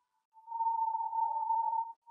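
A single steady high-pitched tone, about a second and a half long, with fainter lower tones beneath it. It is a leftover sound in a live track whose backing music has been stripped out.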